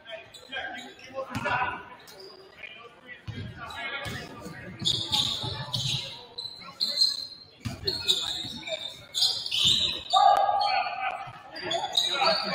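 A basketball being dribbled on a hardwood gym floor, a few separate thuds that echo in the large hall. Players' voices call out over it, loudest near the end.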